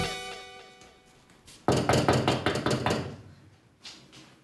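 The end of a salsa theme tune, a final chord ringing away, followed about a second and a half later by a quick series of loud knocks on a door, some eight raps in just over a second.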